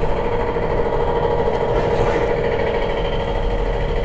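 A motor or engine running with a steady, constant-pitched hum.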